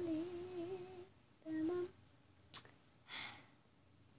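A child humming quietly: a wavering hummed note for about a second, then a short second note, followed by a soft breathy sigh.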